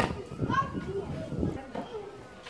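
A tennis ball struck once with a racket, a sharp crack right at the start, followed by children's voices calling and talking.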